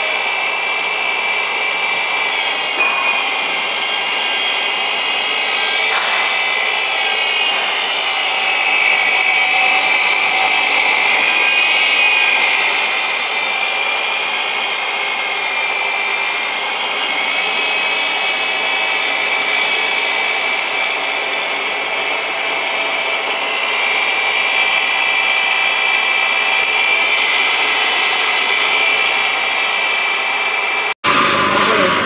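Colloid mill grinding peanuts into peanut butter: its electric motor and grinding rotor run with a steady high whine over a grinding hiss, swelling a little in loudness at times.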